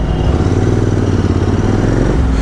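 Royal Enfield Continental GT 650's parallel-twin engine running steadily through aftermarket exhausts as the bike rides along, heard from the saddle.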